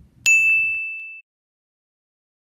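A single bright bell ding, struck once and ringing for about a second before it cuts off abruptly.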